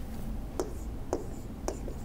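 Faint tapping and scraping of a stylus on a tablet as a word is handwritten, three light taps about half a second apart over a low steady hum.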